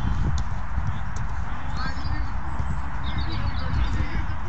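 Players' distant shouts and calls on an outdoor football pitch over a steady low rumble of wind on the microphone, with a few sharp knocks of the ball being kicked.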